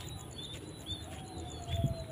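Small birds chirping: repeated short high chirps over steady outdoor background noise, with one low thump near the end.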